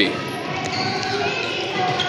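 Children dribbling soccer balls across a hardwood gym floor: balls kicked and bouncing, with running footsteps, in a steady mix that carries the gym's echo.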